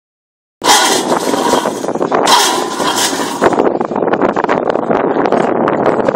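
PC strand pusher machine running, its electric motor and drive rollers pushing steel prestressing strand through a duct. Loud hissing noise starts suddenly about half a second in and comes in two stretches, then a dense, rapid rattling clatter takes over.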